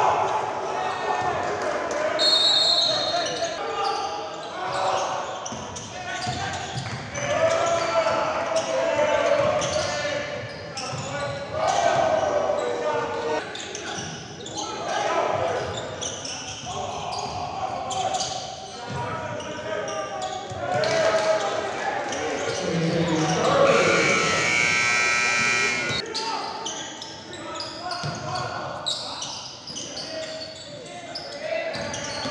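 Live sound of a basketball game in a gym: players and bench shouting, with a ball bouncing on the hardwood floor. A brief high squeal comes about two seconds in, and a buzzer-like tone sounds for about two seconds late on.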